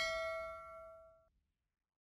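A single notification-bell ding sound effect, ringing and fading out within about a second.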